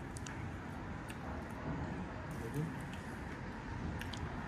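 Street background at night: a steady low rumble of distant city traffic, with faint murmured voices and a few light clicks.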